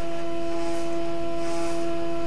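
Stepper motors of a Kossel Mini delta 3D printer driving the three tower carriages down together at a constant F7000 feed, bringing the nozzle to the bed centre. It makes a steady, unchanging motor whine.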